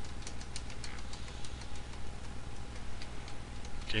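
Computer keyboard keys clicking as numbers are typed, each digit followed by the Enter key: several sharp clicks a second at an uneven pace, over a faint steady hum.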